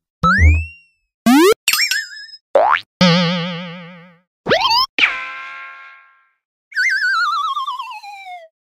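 A string of cartoon sound effects: several quick rising sweeps, then about three seconds in a long wobbling boing that fades away, and near the end a wavering whistle that slides downward.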